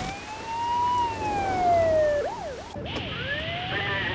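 Ambulance siren: one slow wail rising and then falling, followed by a quick yelp of fast up-and-down sweeps, broken off abruptly near three seconds in.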